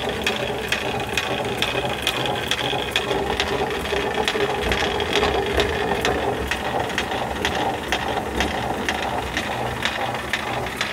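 Water-powered stone grist mill grinding corn: a steady low rumble from the turning millstone, with a rapid wooden clicking about three times a second, typical of the feed shoe knocking as it shakes grain into the stone's eye.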